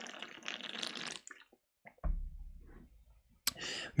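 A computer keyboard clicking and clattering for about a second. About two seconds in there is a brief low rumble, then a breath just before speech resumes.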